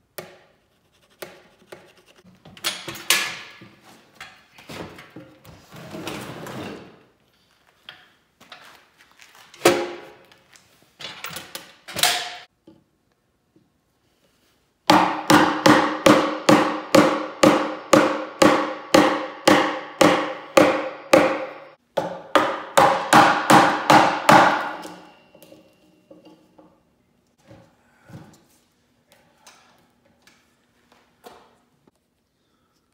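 Wooden mallet striking a steel gouge to carve an ash log's tenon for a tight fit. A few scattered scraping strokes and knocks come first, then a steady run of sharp blows at about two to three a second for some ten seconds, with one short pause.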